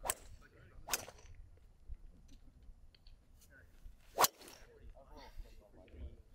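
Driver head striking a golf ball off the tee with a sharp crack about four seconds in, the loudest sound. Two fainter club-on-ball strikes from nearby golfers come at the start and about a second in.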